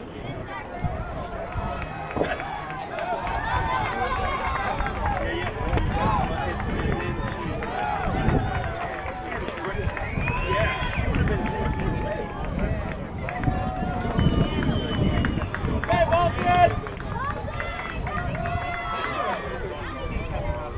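Voices of players and spectators calling out at a softball game, indistinct and with some long held calls, over an uneven low rumble of wind on the microphone.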